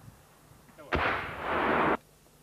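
A heavy gun firing about a second in: a sharp blast followed by a loud roar of noise that cuts off suddenly.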